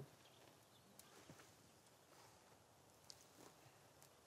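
Near silence: quiet room tone with a few faint small clicks.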